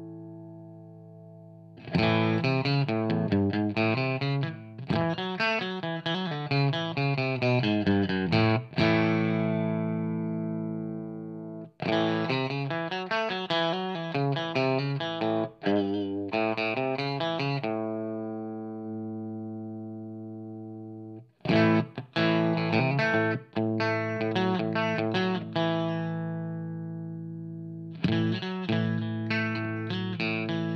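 Electric guitar (a Telecaster) played through an Audio Kitchen Little Chopper hand-wired EL84 tube amp and a Marshall 4x12 cabinet while the amp's Bottom (bass) control is being demonstrated. It plays four bursts of picked chord phrases, and after each of the first three a chord is left to ring out and fade.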